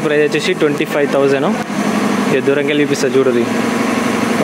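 A man's voice talking, in two stretches with a short pause between them.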